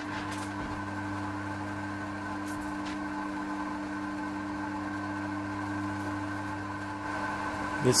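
Steady low electrical hum of workshop equipment, made of several even tones, with a few faint light ticks.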